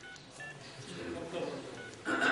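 A few short, high electronic beeps, one near the start, one about half a second in and one near the end, over faint speech.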